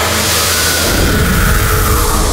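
Cartoon magic sound effect: a loud rushing whoosh that swells and then fades, over a low rumble that deepens about a second in, with background music.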